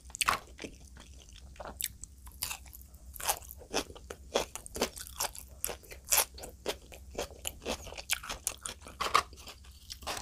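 Close-miked mouth chewing and crunching of food: an irregular run of sharp, crisp clicks, several a second.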